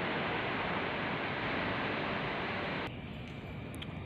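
Steady, even background hiss with no distinct events, dropping to a quieter level about three seconds in.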